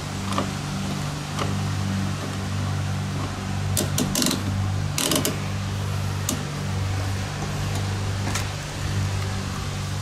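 A steady low mechanical hum of several fixed tones, with a few sharp clicks and rattles of hands working parts and wiring at a fuel-pump access opening, most of them around the middle.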